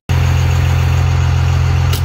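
Vehicle engine idling with a steady low hum at the fuel pump, with a short click near the end.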